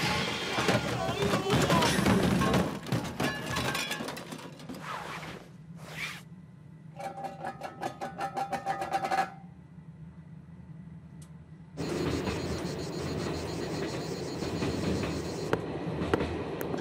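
Cartoon soundtrack of music mixed with sound effects: a rising sweep, then a rapid clatter of about two seconds, a low steady hum, and the music coming back in near the end.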